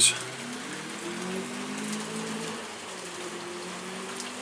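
Heavy steady rain falling and pattering on surfaces, with a brief click at the very start and a faint low hum underneath that slowly slides in pitch.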